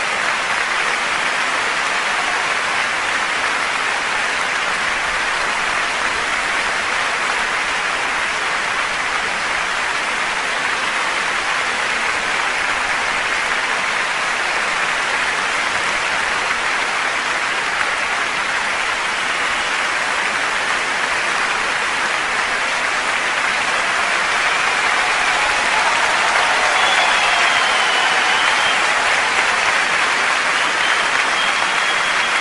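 A large audience applauding steadily, the clapping growing a little louder near the end.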